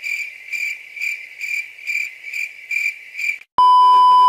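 Crickets sound effect: steady high chirping, pulsing about twice a second. About three and a half seconds in it gives way to a loud, steady test-tone beep of a TV colour-bars screen.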